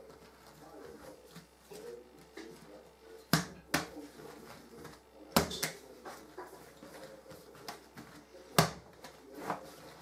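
Bread dough being kneaded and knocked back by hand on a worktop, pressing the air out of the risen dough: soft pushing and squishing, broken by a handful of sharp slaps of dough on the surface. The loudest slaps come about three and a half, five and a half and eight and a half seconds in.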